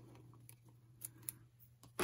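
Near silence: room tone, with two faint ticks about a second in from hands handling a small paper card edged with washi tape.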